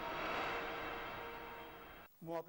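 Transition sound effect of a TV news segment ident: a noisy whoosh that swells to a peak about half a second in and then slowly fades, with faint steady tones under it.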